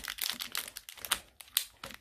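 Plastic packets crinkling as they are handled inside a small zippered pouch, a run of short irregular crackles.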